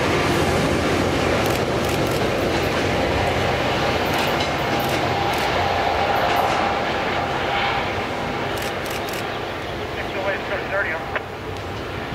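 A Metrolink commuter train drawing away, its diesel locomotive and wheels on the rails fading slowly as it leaves.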